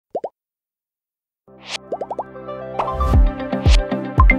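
Two quick rising pop sound effects, then a second of silence. Background music then comes in with a rising swoosh and more pops, and a low beat starts about three seconds in.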